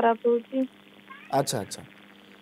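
Speech: a caller's voice over a telephone line, thin and cut off at the top, in short level-pitched syllables, then a brief couple of words in a man's full-range studio voice about a second and a half in, with pauses between.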